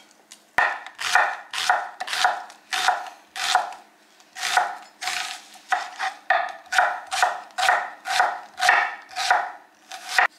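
A chef's knife slicing through a raw onion onto a wooden cutting board, a crisp crunch and knock with each stroke. It begins just after half a second in and keeps an even rhythm of about two slices a second.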